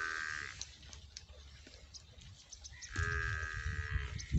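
Rajanpuri goat bleating twice: a short call at the start and a longer one about three seconds in.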